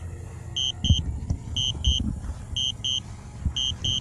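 DJI Spark low-battery warning: a double beep repeating about once a second, signalling that the remaining battery is only enough to return home. Wind buffets the microphone underneath with low rumbles and thumps, the strongest about a second in.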